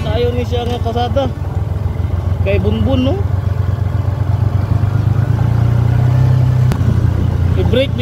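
A vehicle's engine running at low road speed on a rough track, a steady low hum that rises in pitch for about a second and a half past the middle, then settles back.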